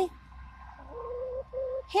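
A hen giving two short, soft, low crooning notes one after the other, about a second in.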